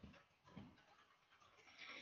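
Near silence: room tone with a couple of faint, brief soft noises.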